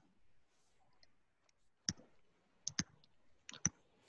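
Faint, sharp clicks from the device used to handwrite onto a computer screen: a single click about two seconds in, a quick pair just before three seconds, and a cluster of three near the end.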